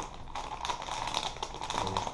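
Plastic bait package crinkling and rustling as it is handled, a quick run of small clicks and crackles.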